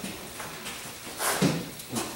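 Light handling sounds of abrasive sanding pads being picked up and shuffled on a workbench, with a brief clatter a little past halfway.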